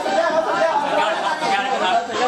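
Several men talking over one another in lively group chatter.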